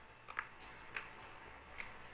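Three faint, separate clicks of computer keyboard keys being pressed during text editing, over low room noise.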